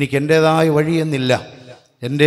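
A man's voice intoning a prayer over a microphone at a nearly level pitch, fading out about a second and a half in.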